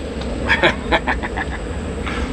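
Toy game spinner ticking as it spins, the clicks spacing out and stopping about a second and a half in.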